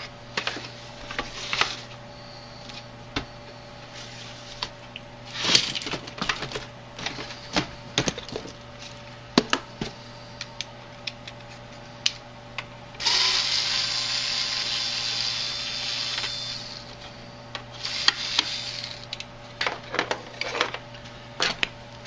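Small cordless electric screwdriver running for about four seconds, then again briefly, backing out small screws from a plastic RC truck body. Scattered clicks and knocks from handling the plastic body and parts come before and between the runs.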